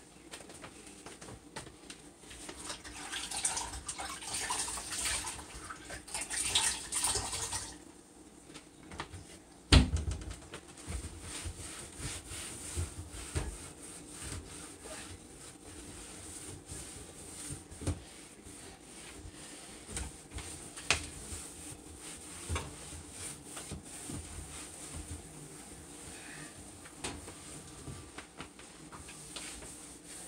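Kitchen tap running into the sink for several seconds. A sharp knock follows a couple of seconds after it stops, then scattered light clicks and knocks of things being handled at the sink.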